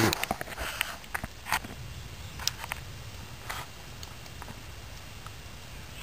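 Small wood campfire crackling, with scattered sharp pops about once a second over a faint low rumble. A quick run of rustling clicks comes in the first second as the camera is handled.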